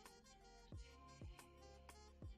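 Faint background music with a steady low beat, about two beats a second.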